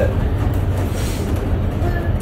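A steady low rumble with a hiss over it, with no sudden events.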